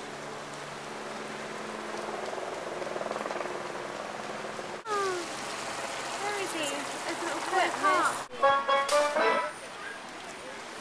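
A steady wash of outdoor noise. After an abrupt cut about halfway through, people's voices come in. After a second cut near the end, a brief held, pitched sound like singing or music is the loudest part.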